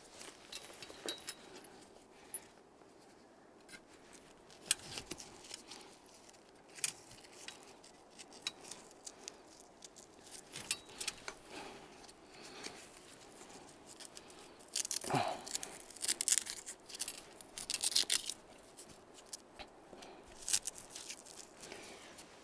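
Straps and buckles being fastened to fix a swag tent to its stretcher-bed frame: scattered small clicks and fabric rustles, with louder stretches of rustling about fifteen and eighteen seconds in.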